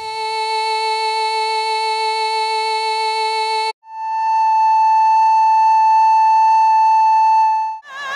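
A single sustained violin note, rich in harmonics, held steady and cut off abruptly after nearly four seconds. It is followed by a sustained recorder note an octave higher with a purer, plainer tone, held for about four seconds.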